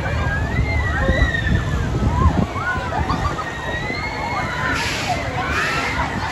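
Riders on a spinning fairground thrill ride screaming, many high wavering cries overlapping, over a steady low rumble. Two short bursts of hiss come near the end.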